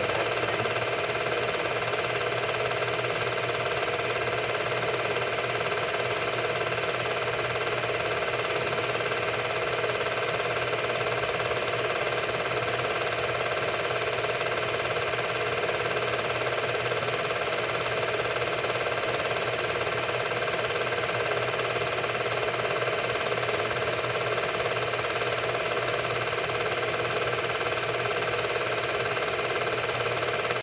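Film projector running steadily: an even, unbroken mechanical whir from the projector mechanism, with no other sound.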